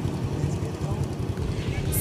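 Motorcycle engine idling with a low, uneven rumble.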